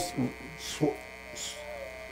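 Steady electrical mains hum with a buzz of many overtones, under a few faint, brief scraps of voice and a short breathy hiss in a pause of speech.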